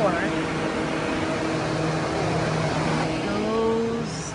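Two air movers running steadily with a low, even hum, blowing air to dry out a water-damaged attic and ceiling.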